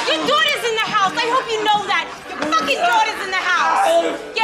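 Slurred, unintelligible voices of men heavily intoxicated on quaaludes, drawn-out wordless sounds with no clear words.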